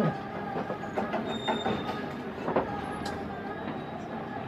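A live traditional Malaysian orchestra playing in a concert hall, under a dense, steady background noise, with no singing voice over it.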